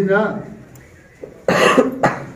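A man's speech trails off, then there is a quiet gap and a single loud cough about a second and a half in.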